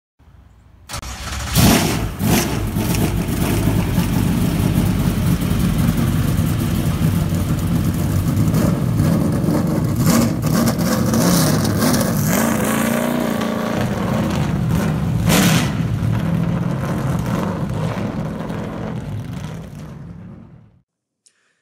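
Car engine starting about a second in and revving, then running with a deep rumble and a brief rise and fall in pitch past the middle, fading out near the end.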